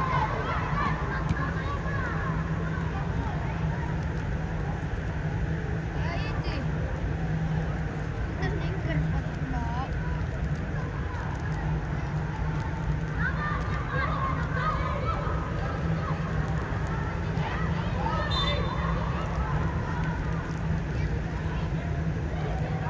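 Scattered distant shouts and calls from youth football players on the pitch, echoing in a large air-supported dome, over a steady low hum.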